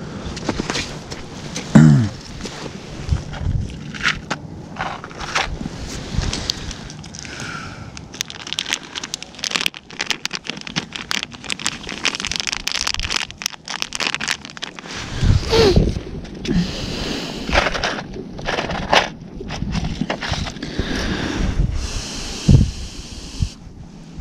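Crinkling of a clear plastic bait packet and rustling of thick gloves as hands open and handle it: irregular crackles and clicks throughout.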